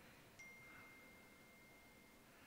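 Near silence, with one faint, steady high ringing tone that starts with a small click about half a second in and holds.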